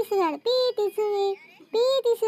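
A young child's high-pitched voice singing a few short held notes, one syllable after another, the third held for about half a second.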